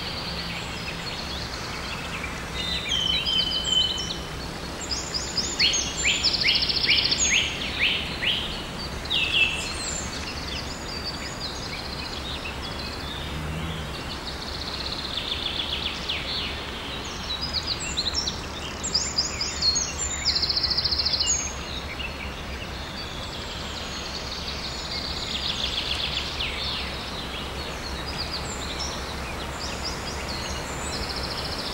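Wild songbirds singing: phrases of high chirps and trills every few seconds, over a steady low background noise.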